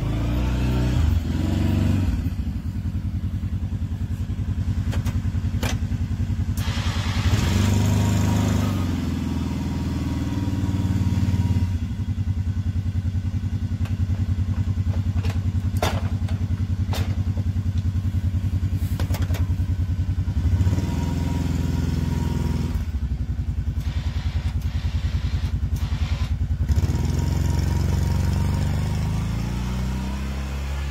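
ATV engine running and revving up and down several times as the quad pushes a plow blade through snow, with a few sharp knocks.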